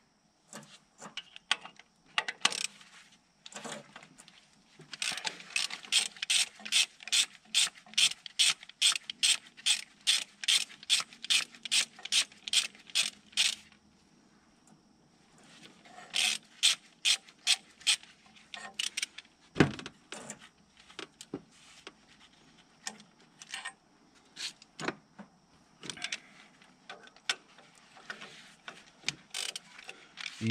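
Hand socket ratchet clicking as 13 mm bolts are turned out. It runs in a long, even spell of about three to four clicks a second, then in shorter spells of clicks with pauses between them.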